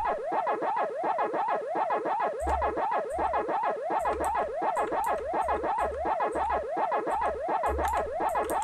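Pac-Man-style chomping sound effect ('waka waka'): an electronic tone sweeping up and down over and over, about four times a second.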